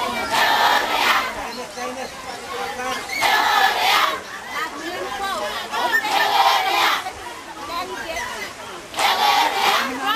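A large group of women's voices calling out together in unison, four loud bursts about three seconds apart, with a single voice and crowd chatter in the gaps, typical of a chanted seated dance.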